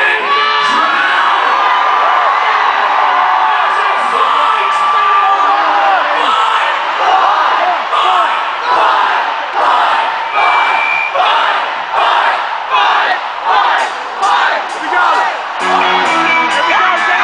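Arena crowd cheering and yelling under one long held scream into the singer's microphone. From about six seconds in, the crowd shouts in a steady rhythm, about three beats every two seconds, and the band comes in right at the end.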